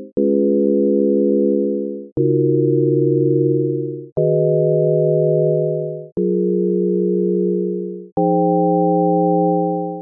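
Csound synthesizer looping a chord progression of pure sine tones: five chords in a row, a new one every two seconds. Each chord starts with a sharp click and fades away just before the next.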